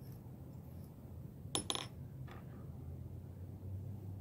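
A small hard object clinks twice in quick succession on the work surface, about a second and a half in, with a brief high metallic ring and a fainter tick just after, over a low steady hum.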